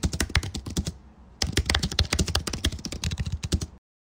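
Computer keyboard being typed on: a quick run of keystrokes with a brief pause about a second in, then a second run that stops abruptly near the end.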